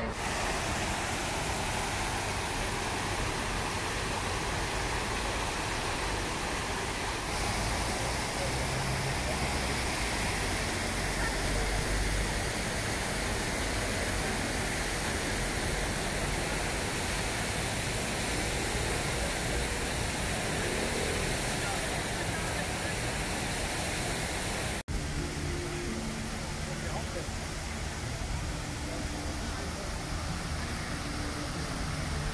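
Fountain jets splashing steadily into their basins, a continuous rush of falling water, with people's voices and low city traffic underneath. The sound cuts out for an instant about 25 seconds in.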